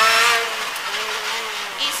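Rally car engine heard from inside the cockpit, pulling hard at high revs, then backing off about half a second in and holding a quieter, steadier note on the approach to a chicane.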